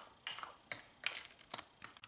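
A metal spoon stirring mashed avocado and green salsa in a ceramic bowl, with about half a dozen sharp clinks of the spoon against the bowl and soft scraping between them.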